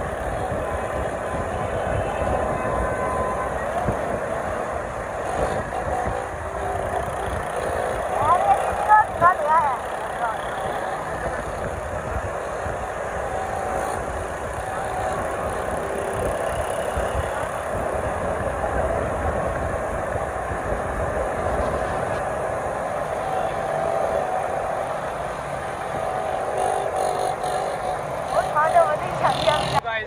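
Several small motorcycles running steadily together at low speed, with a rumbling wash of wind on the microphone. Voices shout briefly about nine seconds in and again near the end.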